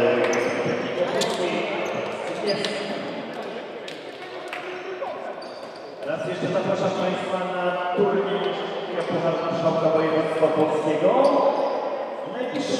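Several people's voices in a large sports hall during a stoppage in a basketball game. A basketball bounces a few times on the wooden floor in the first half.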